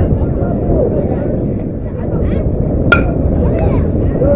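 A metal baseball bat hits a pitched ball once, about three seconds in, with a sharp ping that rings briefly. People talk in the background.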